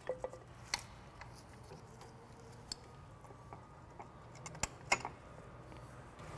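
Light metallic clicks and clinks of rear drum-brake shoes, springs and hardware being fitted onto the backing plate by hand: a dozen or so scattered sharp clicks, the loudest near the start and a pair just before the end.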